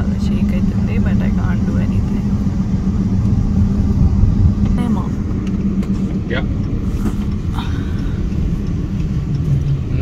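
Car road noise heard from inside the cabin: a steady low rumble of tyres and engine with a constant hum while the car drives along.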